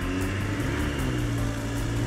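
A steady low vehicle engine drone, rising slightly in pitch about halfway through.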